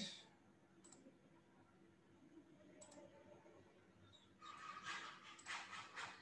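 Faint computer mouse clicks: a couple of single clicks, then a quicker run of clicks in the last second and a half.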